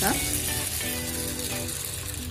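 Water poured in a thin stream onto dry sago pearls in a bowl, a steady splashing hiss, with background music holding long notes.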